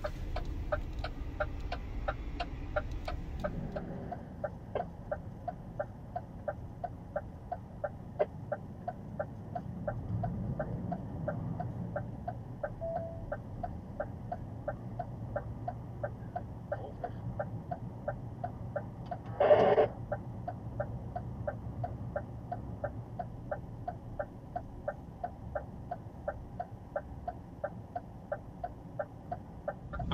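A truck cab's indicator or hazard-light relay ticking evenly, a couple of ticks a second, over the low running of the idling truck engine. A single short, loud beep sounds about two-thirds of the way through.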